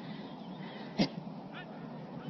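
A dog gives one short yelp about a second in, then a faint brief whine, over a steady background hiss.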